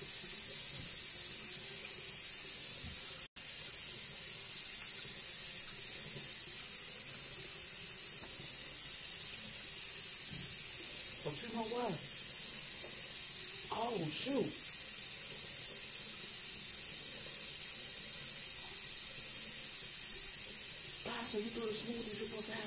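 A steady high hiss, with a faint voice murmuring briefly twice around the middle and a momentary dropout a few seconds in.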